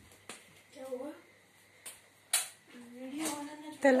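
Voices in a small room: short calls and words from a woman or child, with the name "Tala" called near the end. A few sharp clicks and knocks come in between, the loudest a little over two seconds in.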